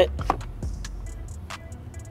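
Small clicks and taps of a crimped terminal pin being worked into a plastic wiring-harness connector, with one sharper click about one and a half seconds in.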